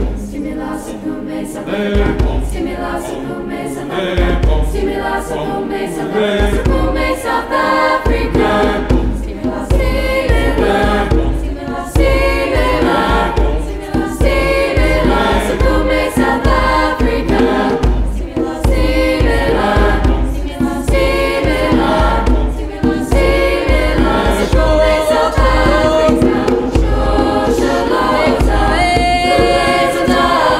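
Choir singing with a female soloist out front, accompanied by a hand drum. The drum beat enters about two seconds in, drops back briefly, then keeps a steady beat under the voices.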